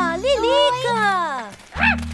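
A cartoon character's voice in drawn-out, sing-song calls that slide down in pitch and waver, over light background music.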